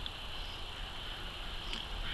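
Quiet outdoor background with a steady, high-pitched drone of insects.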